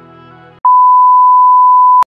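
Soft background music cuts off about half a second in and is replaced by a loud, single steady electronic beep tone, a plain bleep held for about a second and a half.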